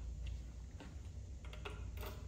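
A few faint clicks and taps as a cable plug is fitted into the socket of an FM assisted-listening transmitter and the unit is handled.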